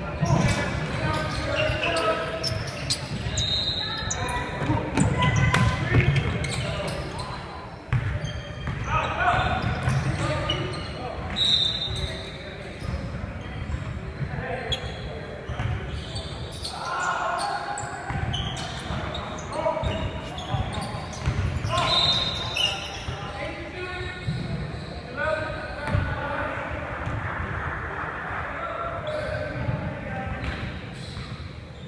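Basketball being bounced on a hardwood gym floor during play, repeated sharp thuds echoing in a large hall.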